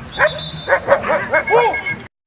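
German Shepherd Dogs barking, about five short barks in quick succession. A thin high whistle-like tone sounds briefly twice, once near the start and once near the end.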